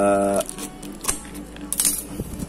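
Scissors snipping through the tape and plastic wrap of a small cardboard parcel: sharp clicks and plastic crinkling, busiest near the end. A steady pitched tone cuts off shortly after the start.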